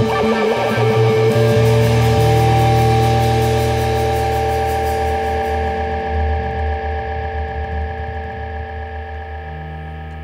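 Live rock band ending a song: electric bass and guitar notes over drums for the first couple of seconds, then a held chord that rings on and slowly fades out.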